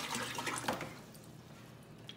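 Water splashing and gurgling in a bucket as a plastic gallon jug filled from a power head's hose is handled and lifted out. The sound is loudest in the first second, then settles to a quieter trickle and drip.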